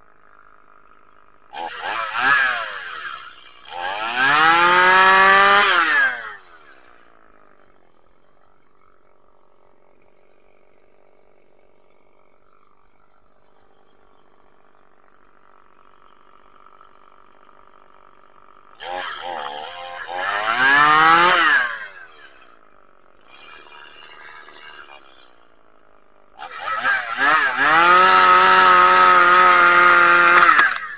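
Two-stroke Stihl top-handle chainsaw idling between short bursts of throttle, the pitch climbing each time it revs. It is revved a few times for one to three seconds, then held high for about four seconds near the end.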